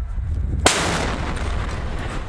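One shot from a heavy gun mounted on a pickup truck, about two-thirds of a second in: a sudden loud blast that trails off in a long echo.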